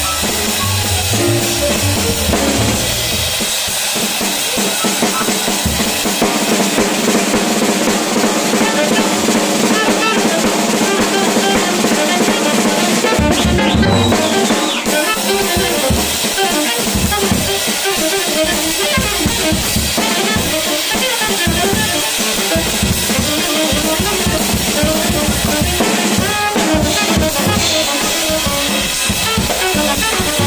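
Drum kit played with sticks in a jazz combo, the drums loudest in the mix with busy snare, cymbal and bass-drum strokes.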